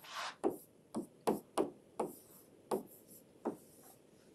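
A stylus tapping and scraping on a tablet screen while writing a word by hand: a series of about eight short, light knocks at uneven intervals, with a brief scrape at the start.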